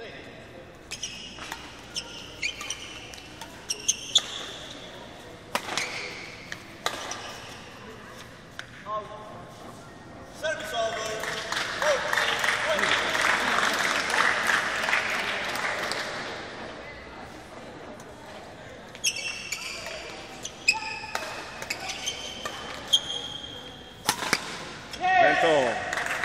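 Badminton rally: sharp racket hits on the shuttlecock and shoes squeaking on the court floor, heard in a large hall. The crowd's cheering and shouting swells loudly in the middle and rises again near the end.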